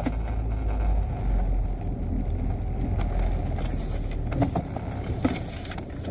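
Steady low road and engine rumble of a car being driven, heard inside the cabin, with a few faint clicks in the second half.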